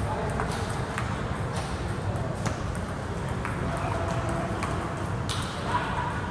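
Table tennis balls clicking off paddles and tables in an irregular run of sharp ticks, from a practice rally and other tables in play around it.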